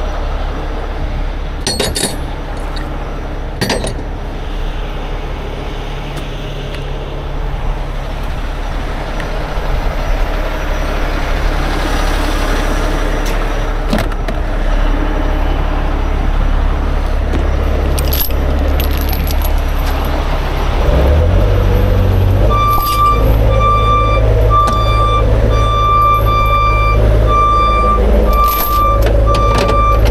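Heavy diesel engines running steadily, with two sharp chain clinks in the first four seconds. About 21 s in another engine comes up, and from about 22 s a back-up alarm beeps steadily about once a second.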